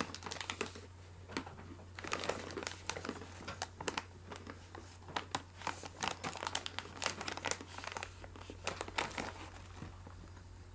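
A plastic snack pouch crinkling as it is handled, in irregular crackles.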